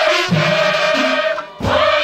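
A large group of women singing a chant-like song together in long held phrases, with a deep thud about one and a half seconds in.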